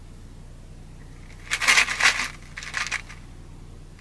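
A plastic cold cup being grabbed and shaken by a baby's hands, its plastic and the leftover ice inside rattling and crinkling: two bursts about halfway through, the first longer than the second.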